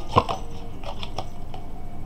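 A sharp tap followed by a few light clicks from tarot cards being handled and laid on a table.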